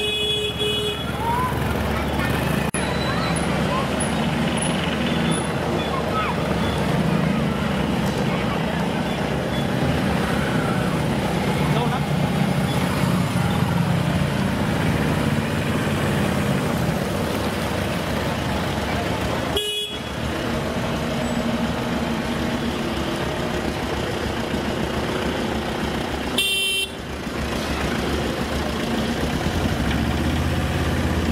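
Street traffic: engines of auto rickshaws, a small truck and scooters running as they drive through a waterlogged road, with a vehicle horn honking at the start and short horn toots twice later on.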